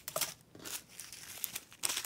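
Small plastic zip-lock bags of diamond-painting drills crinkling as they are handled, in short irregular rustles, with a sharper crinkle near the end.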